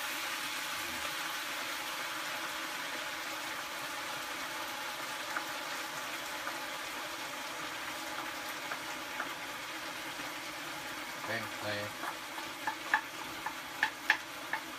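Food sizzling steadily in a frying pan on a stove. A few sharp clicks of a utensil against the pan come in the last few seconds.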